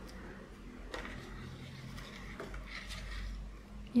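Faint handling sounds: soft rustling and a light tap about a second in, as small craft flowers are picked up and laid against paper envelopes.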